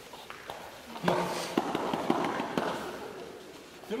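Two people grappling on foam mats: clothing rustling and a scuffle of knees, hands and bare feet shifting and tapping on the mat, with many small clicks. It picks up about a second in and dies away near the end.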